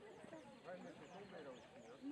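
Faint, overlapping chatter of several distant voices, with a bird's short, high, falling chirps repeating through it.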